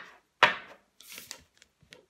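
Tarot cards handled on a tabletop: a sharp tap as a card is set down about half a second in, then a brief rub of card against card or table.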